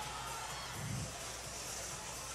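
Faint arena background: music playing over the hum of a large crowd.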